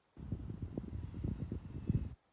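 Wind buffeting the microphone: an uneven, gusty low rumble that switches on abruptly just after the start and cuts off right at the end.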